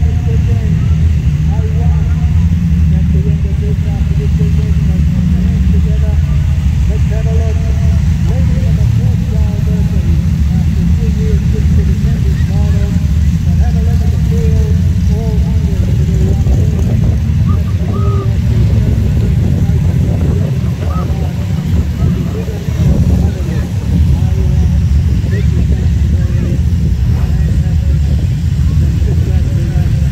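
Production sedan race cars' engines rumbling low and steady in a slow parade, with indistinct voices over the top.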